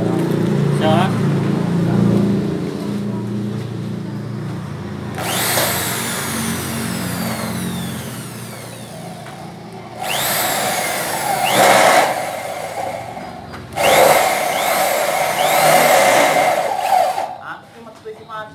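Handheld electric power drill run in bursts: its pitch rises sharply each time it spins up. After the first burst it winds down slowly, and in the last stretch it is pulsed with short squeezes of the trigger.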